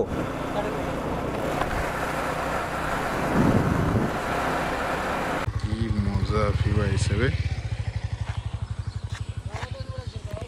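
Motorcycle riding at speed, with wind rushing over the microphone and the engine running underneath. After a cut about five seconds in, a sport motorcycle's engine idles with a steady, rapid putter, and voices briefly join it.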